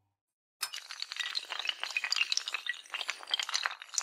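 Intro sound effect of many hard tiles toppling and clattering: a dense, uneven run of sharp clinks that starts suddenly about half a second in, after a brief silence.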